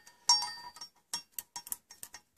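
Small metal tools clinking: a sharp ringing clink about a quarter second in, then a quick run of light irregular ticks as a micrometer is handled and fitted onto a crankshaft main bearing journal.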